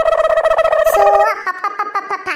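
A loud, high-pitched cartoon voice holding one long note for just over a second, then breaking into shorter, choppier sounds.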